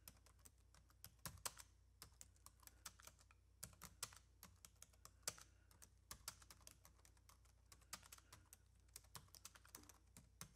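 Near silence with faint, irregular clicks of computer keyboard typing scattered throughout.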